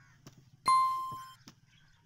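A single bright electronic chime, a notification ding, starts sharply under a second in and fades for about two-thirds of a second before cutting off. It is the sound effect of a subscribe-button and bell-icon animation.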